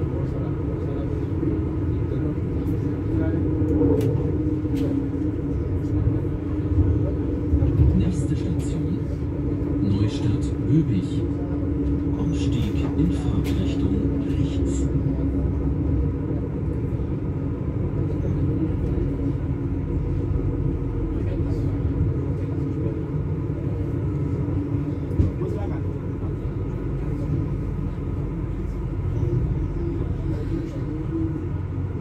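Inside a moving regional passenger train: a steady rumble of wheels on the track with a constant drone from the train's drive.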